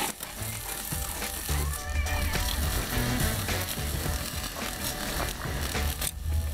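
Background music over meat and fish sizzling and crackling on a wire grill above hot charcoal.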